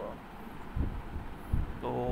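A pause in a man's speech filled with a few short, low thumps and a faint hum; he starts speaking again near the end.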